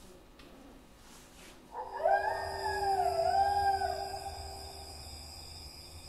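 A single long, wavering howl that starts about two seconds in and dips and rises in pitch over a faint steady drone.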